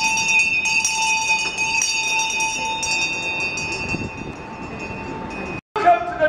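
Town crier's handbell ringing, several high tones hanging on and slowly fading, cut off abruptly near the end.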